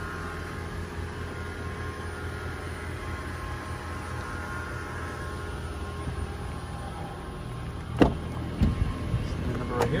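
A steady low hum throughout, then a sharp click about eight seconds in followed by a couple of lighter knocks, as a car door is unlatched and swung open.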